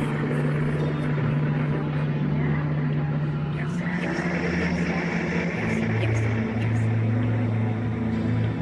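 Dark, droning music track: low sustained tones over a dense rumbling, hissing bed, the low note dropping about halfway through and then pulsing with short breaks.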